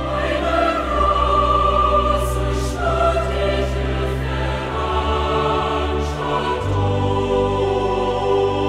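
Choral music with orchestra: a choir singing long held notes over sustained strings and bass, loudening slightly about a second in.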